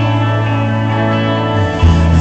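Live band playing an instrumental passage led by sustained electric guitar with effects. Near the end the bass steps down to a deeper note and the band gets louder.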